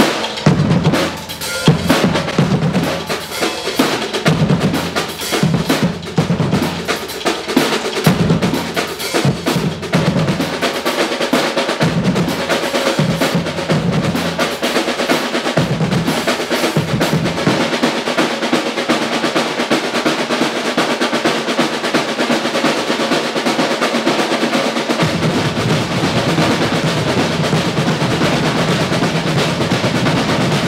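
A drumline of snare drums and a bass drum playing, the strokes and low bass hits standing apart at first, then merging about halfway through into a dense, continuous stretch of fast playing.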